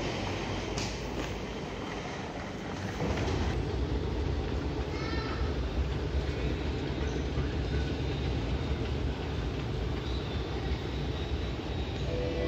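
Airport terminal ambience: a steady low rumble, a little louder from about three seconds in.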